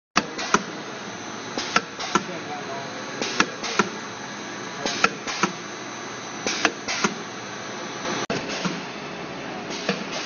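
Arcobaleno ARSP160-250 ravioli machine with piston filling injectors running: sharp clacks in groups of two or three about every second and a half over a steady running hum.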